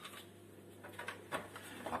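A few faint clicks of a plastic cap being handled and put back on a milk jug, over a steady low hum in a quiet kitchen.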